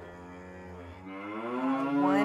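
A cow mooing: one long low call that rises slowly in pitch and grows louder toward the end.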